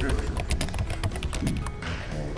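Keyboard-typing sound effect, a rapid run of clicks that stops near the end, with background music underneath.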